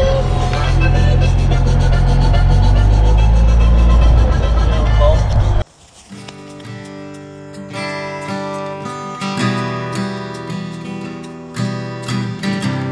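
Golf cart driving over grass with a steady low motor hum, cut off suddenly about five and a half seconds in by acoustic guitar music.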